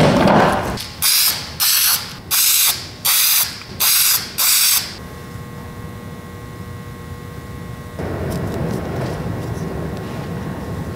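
Masking tape pulled off the roll in six short rasping strips, one after another about every seven-tenths of a second. A softer, steady noise comes in near the end.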